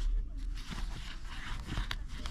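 Faint rustle and scratch of yarn being drawn through stitches with a metal crochet hook, with small ticks and one sharper tick near the end.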